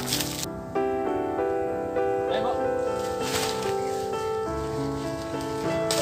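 Background music: a keyboard melody of held notes that change about every half second, with a few brief bursts of noise over it.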